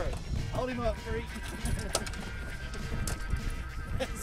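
Wind noise rumbling on the microphone on an open boat, with a short voiced sound, a laugh or exclamation, about half a second in. Background music comes in over it in the second half.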